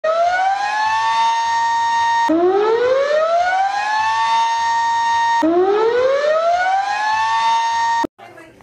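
Outdoor tornado warning siren winding up: its tone rises in pitch and then holds steady. The rise restarts abruptly from the low pitch twice, so it is heard three times.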